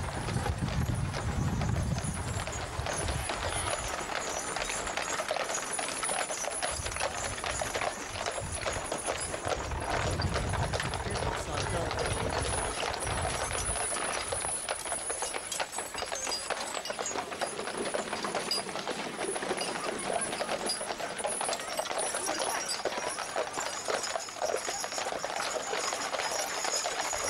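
Hooves of pairs of Shire horses clip-clopping on hard ground as they walk past pulling drays, with onlookers' voices in the background.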